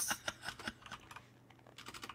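Typing on a computer keyboard: a quick run of key clicks, a pause, then a few more clicks near the end.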